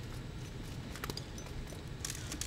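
Steady low background rumble with a few faint clicks and taps, the clearest about a second in.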